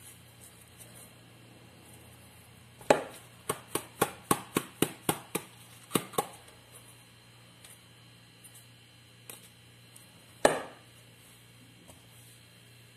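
Plastic pot of dry seasoning being knocked against a hard surface to settle and pack the seasoning down. There is one sharp knock about three seconds in, then a quick run of about ten knocks at roughly four a second, two more near six seconds, and a final loud knock near the end.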